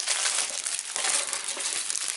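Clear plastic packaging wrap crinkling and crackling without a break as it is handled and pulled off by hand.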